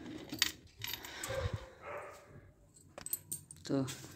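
A bunch of keys jangling against a drawer's metal lock and handle, with a few sharp metallic clicks, one near the start and several about three seconds in.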